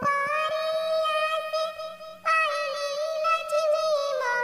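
A high-pitched, cartoon-like singing voice of the Talking Tom kind sings a Diwali song in long held notes. It pauses briefly about two seconds in, then starts a new phrase.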